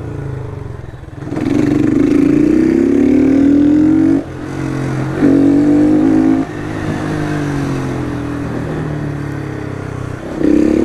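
Honda street motorcycle's engine pulling away under throttle, its pitch rising for about three seconds before dropping off sharply. A short louder burst of revs follows, then a steadier, lower drone as the bike cruises.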